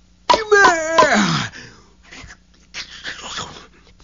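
A cartoon man's strained vocal groan that slides down in pitch for about a second, followed by softer breathy noises, voice acting for a straining, shaking effort.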